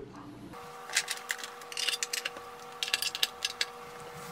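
Light clicks and rattles of speaker wires being handled and connected to the terminals of a small stereo amplifier, over a faint steady tone.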